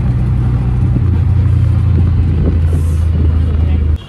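Auto-rickshaw engine running while under way, a loud low drone that drops in pitch about a second in, with wind buffeting the microphone in the open cabin. It cuts off suddenly at the end.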